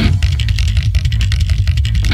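Heavy hardcore/doom metal band recording in a break where the guitar drops out, leaving a loud low bass rumble with drum hits before the full band comes back in.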